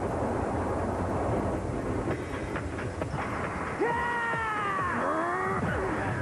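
A steady, train-like rumble, then from about four seconds in several pitched whines that slide mostly downward in pitch.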